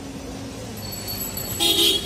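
A vehicle horn honks once, briefly, near the end, over steady street traffic noise.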